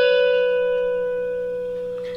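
A single electric guitar note, the B string at the 12th fret, sustaining after a slide down from the 14th fret and fading slowly and steadily.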